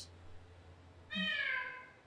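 A single cat's meow, one call sliding down in pitch, starting a little over a second in.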